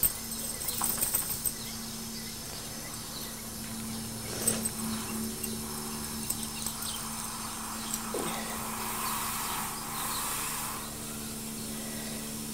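Faint hiss of a garden hose spraying water on a dog, swelling about nine seconds in, over a steady low hum and a few light ticks.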